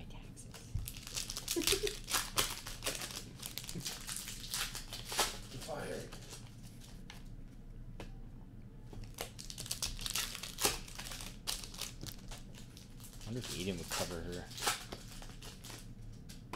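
Foil wrappers of Upper Deck hockey card packs crinkling and tearing as packs are opened and cards handled, in irregular bursts of crackles.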